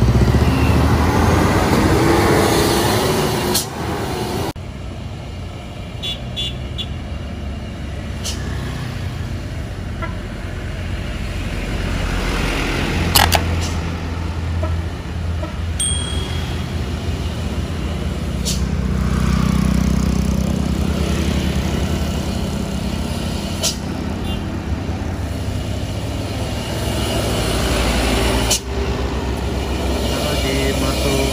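Heavy diesel trucks and a bus passing close by, with engines running and road traffic noise. A Hino 500 truck's engine note rises in the first few seconds.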